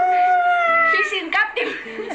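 A long, high, drawn-out vocal wail that slides up, holds and slowly falls, over background music with sustained low chords.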